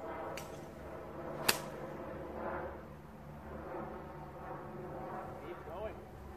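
A golf iron striking the ball from the rough: one sharp crack about a second and a half in.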